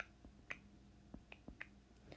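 A handful of light, sharp clicks from a stylus tip tapping on an iPad's glass screen as minus signs are written, the first the loudest, against near silence.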